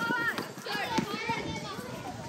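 Several teenage girls' voices calling and shouting over one another, with one sharp knock about a second in.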